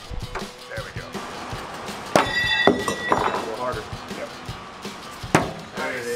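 Throwing knives hitting a wooden target board: a sharp impact about two seconds in, with the steel blade ringing for most of a second, then a second, shorter impact near the end.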